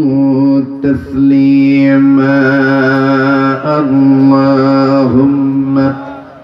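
A man's voice chanting Quranic recitation (tilawah) in a slow melodic style, holding long steady notes that step up and down in pitch. There are short breaths about a second in and twice more later.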